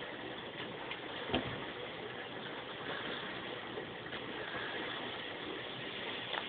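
Steady low background noise with no distinct source, broken by one short click about a second and a half in.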